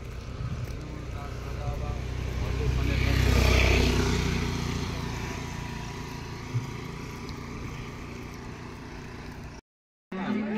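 A motor scooter passing close by and riding away: its engine and tyre noise rise to a peak about three and a half seconds in, then fade slowly. The sound cuts off shortly before the end.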